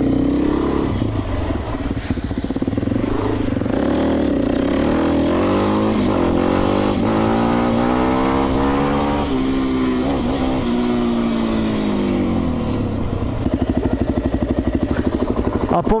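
Suzuki LT-Z400 quad's single-cylinder four-stroke engine pulling hard, its pitch climbing for several seconds, dropping at a gear change and climbing again. Near the end it falls back to a steady, lumpy idle.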